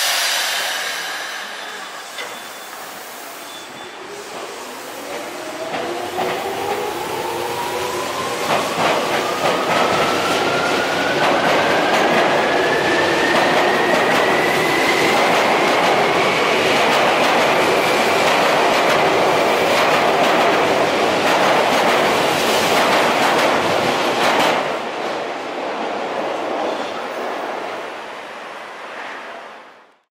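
Tokyu 8500 series electric train pulling out of a station: after a brief sharp sound at the very start, its field-chopper-controlled traction motors whine, rising steadily in pitch as it accelerates, with rapid clatter of wheels over rail joints. The sound drops suddenly as the last car goes by and fades away.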